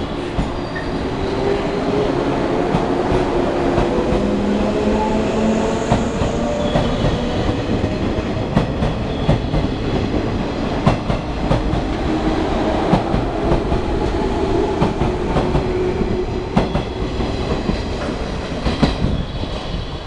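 A JR 113 series electric train pulling out of a station platform. Its motor whine rises steadily in pitch as it gathers speed, and its wheels make repeated clacks over the rail joints as the cars pass close by.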